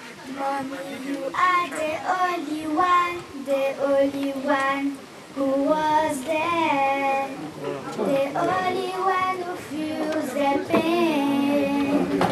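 A young girl singing into a handheld microphone, in a high child's voice with long held notes, pausing briefly about halfway through.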